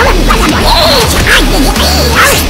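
Spinning car wash brushes swishing and slapping against a plush toy under water spray, over background music.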